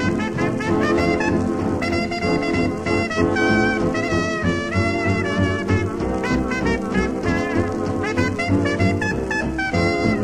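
1930s dance band playing an instrumental passage of a fox trot, with brass, heard from a 1936 78 rpm record.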